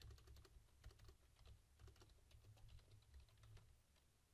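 Faint typing on a computer keyboard: a quick run of keystrokes that stops shortly before the end, over a low hum.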